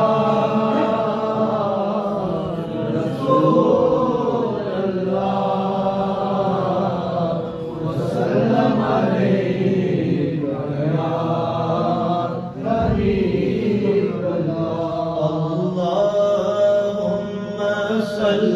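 Voices chanting together in a slow devotional chant, with long held and gliding notes.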